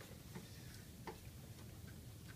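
Quiet room tone with a few faint, sharp ticks, irregularly spaced and under about a second apart.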